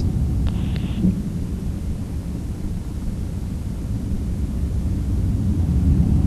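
Cessna 152 Aerobat light aircraft heard from afar as a steady low rumble.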